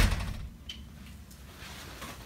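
A sharp knock just at the start, dying away within half a second, then quiet room tone with a faint tick.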